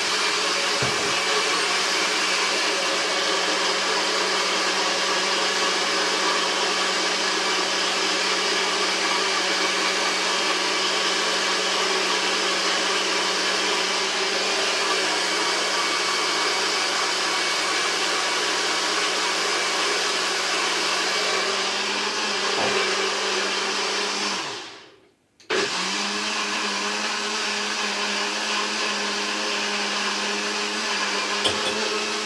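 Countertop blender motor running steadily, blending carrots and ginger with water. About 25 seconds in it runs down to a brief stop, then the sound comes back suddenly at full strength.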